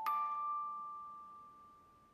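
A single high bell-like note, struck once and left to ring, fading steadily away over about two seconds: the closing note of the piece.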